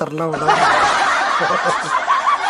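Laughter, loud and unbroken from about half a second in, after a brief word or two of speech.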